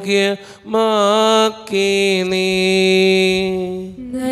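A man's voice chanting a slow liturgical melody into a microphone. A short phrase and a brief pause about half a second in are followed by a gliding phrase, then a long steady note held from just under two seconds in until near the end.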